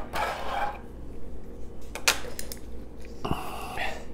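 Clear plastic blister packaging crinkling as it is handled, with a few sharp plastic clicks and taps against the stone countertop about two seconds in.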